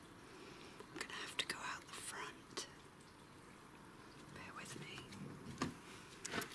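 A person whispering faintly close to the microphone, with a few sharp clicks in two short spells.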